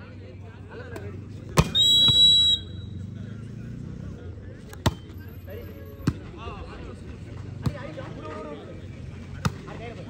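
A referee's whistle is blown once, briefly, about two seconds in, signalling the serve. After it come four sharp single slaps of hands striking a volleyball, a second or two apart, as the rally is played.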